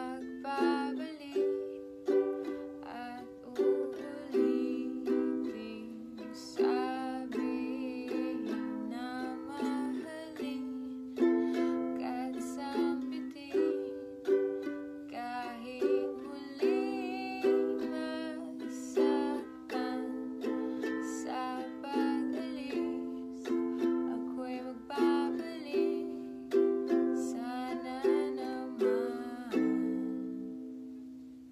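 Ukulele strummed in a steady rhythm of chords while a woman sings along.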